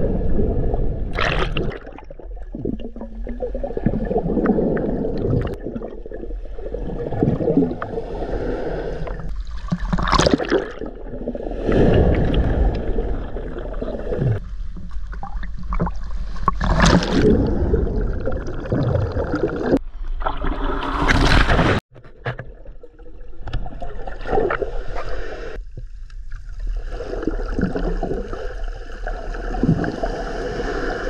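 Ocean surf heard through an action camera half in and half out of the water: muffled underwater rumbling and gurgling of churning water, broken by several loud surges as waves break over the camera.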